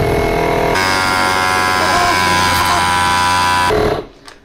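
Makita 40V XGT MP001G cordless tyre inflator running under load, pumping a bicycle tyre toward its 80 psi setting; its note changes about a second in, and it stops near the end.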